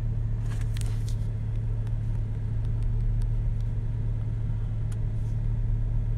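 A steady low rumble with a constant hum throughout, and a few faint clicks about half a second to a second in.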